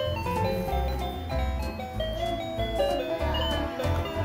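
Background music: a bouncy, chime-like electronic melody over a steady bass line and light percussion.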